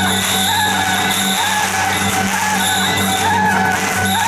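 Temple procession band playing: a wavering reed-horn melody from suona and saxophone through the cart loudspeakers, over a steady low hum, with the crackle of firecrackers.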